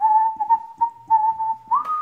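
An Airedale Terrier puppy whining: one long, high, steady whine that wavers a little and rises in pitch near the end.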